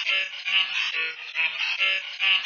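A singing voice heavily processed with vocoder-type effects, repeating one short syllable in quick pulses, about three or four a second. It sounds thin and dull, with its top end cut off.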